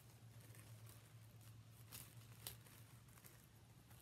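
Faint crinkling of a loose clear plastic shrink-wrap sleeve being handled, with a couple of small clicks about halfway through, over a low steady hum.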